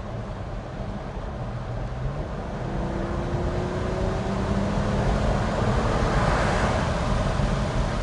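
Twin-turbo V6 of a 1948 Cadillac coupe restomod built on Cadillac ATS-V running gear, pulling under steady acceleration. Its engine note climbs slowly and grows louder through the first six seconds, over road and wind noise.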